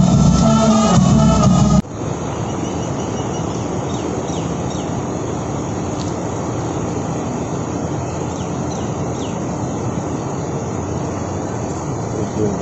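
Brass band music with deep bass notes and drum cuts off abruptly a little under two seconds in. Steady outdoor background noise follows, with faint short high chirps now and then.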